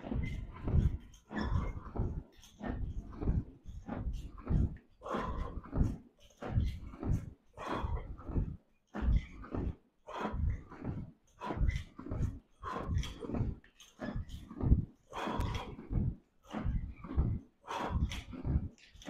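A man breathing hard from exertion in a steady rhythm, about a breath every half second to second, as he works through repetitions of a resistance-band pulling exercise.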